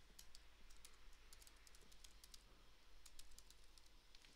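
Faint typing on a computer keyboard: a quick run of light keystrokes as a word is typed, over a low steady hiss.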